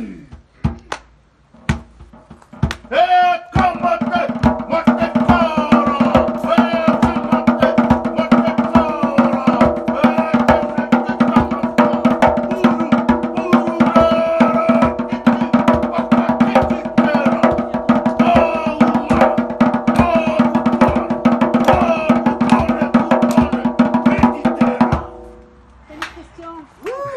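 Fast Polynesian drumming with sticks, a dense rapid roll accompanying a haka-style dance, with a voice chanting held notes over it. A few separate beats lead in, the full drumming starts about three and a half seconds in and stops about a second before the end.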